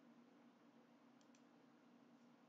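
Near silence: faint room hum with two quick, faint computer-mouse clicks a little over a second in.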